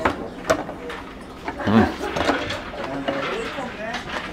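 Two sharp knocks of tableware on the table in the first half-second, then a person's voice talking.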